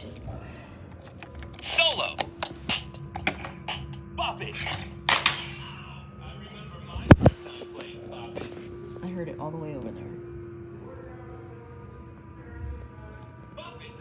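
Bop It toy handled and knocked about on a hard floor: scattered plastic clicks and knocks, with one loud knock about seven seconds in, and short snatches of the toy's electronic voice and sound effects.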